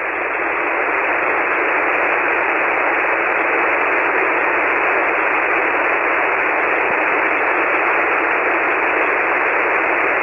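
Steady hiss of band noise from an HF ham transceiver tuned to 40-metre single sideband, with no station talking. The hiss is thin and narrow like a telephone line, and it climbs a little over the first second before holding level.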